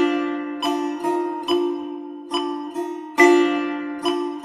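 Solo setar playing a slow rhythm exercise of quarter and eighth notes at tempo 70: single plucked notes and quick pairs, each ringing out and fading. A strong stroke about three seconds in starts the next bar.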